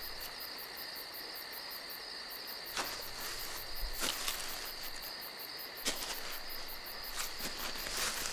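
Night ambience of crickets chirping steadily in fast, even pulses, with a few short crunches of footsteps in dry leaves.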